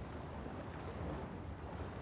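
Quiet, steady outdoor ambience: a low rumble under a soft hiss, with no distinct events, like wind buffeting the microphone.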